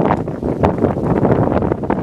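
Wind buffeting the microphone: loud, rough rumbling noise that rises and falls unevenly.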